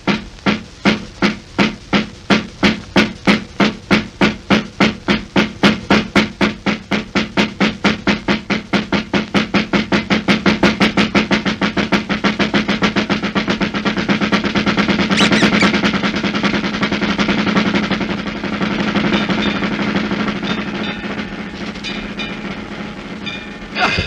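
Cartoon cleaver-chopping sound effect: evenly spaced chops that speed up steadily until they run together into a continuous rattle like a drum roll, over a held musical note. A sudden loud hit comes right at the end.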